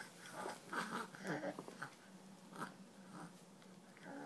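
Baby chewing and smacking on a piece of banana: a cluster of short wet mouth noises in the first two seconds, then another about two and a half seconds in.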